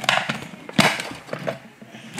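Several short plastic clicks and knocks from a remote-control toy centipede being handled and its power switch turned on. The loudest click comes just under a second in.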